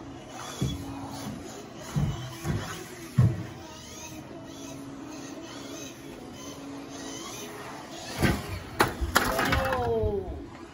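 Team Associated B74.1 electric 1/10 4WD buggy running on an indoor carpet track: its motor whine rises and falls, with a few short thuds about half a second, two and three seconds in as it lands off jumps. A louder stretch of noise with a falling tone comes near the end.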